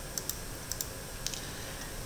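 A few faint computer clicks, coming in quick pairs, as slides are advanced on the computer.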